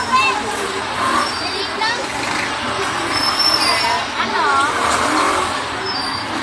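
Many children's voices chattering and calling over a steady wash of street traffic noise.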